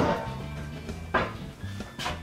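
Hammer strikes nailing a plasterboard sheet to a stud: one sharp strike at the very start and another about a second in, over background music.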